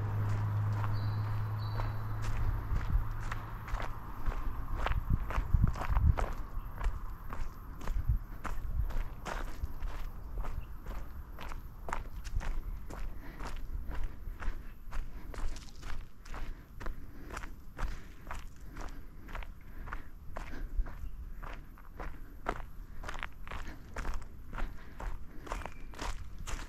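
A walker's footsteps, steady and even at about two steps a second. A low hum is heard at the start and fades away within the first few seconds.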